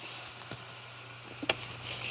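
Quiet handling of a plastic toy over bedding and a cardboard box: a soft click about half a second in and a sharper click near the end, over a steady low hum.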